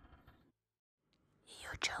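A faint sound carried over from the preceding music dies away about half a second in. After a second of silence, a person whispers near the end.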